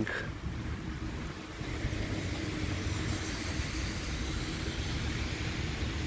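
Road traffic on a wet street: a steady low rumble with tyre hiss from passing cars.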